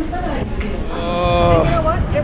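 A man's drawn-out, slightly falling vocal sound of enjoyment, a long "mmm"-like moan, as he eats a burger. It lasts under a second, starting about a second in.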